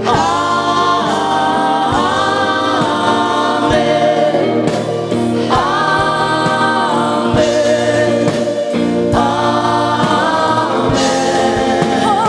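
Live worship band playing a gospel praise song: several singers in harmony, with long held notes, over acoustic guitar and band accompaniment.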